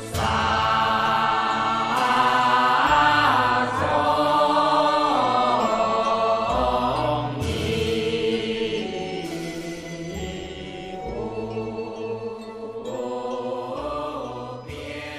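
Pure Land Buddhist nianfo chant: voices chanting in praise of Amitabha Buddha with long, gliding sung notes. It grows softer in the second half.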